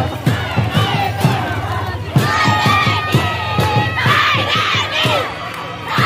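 A crowd of students' voices shouting together in a marching procession, with music faintly underneath.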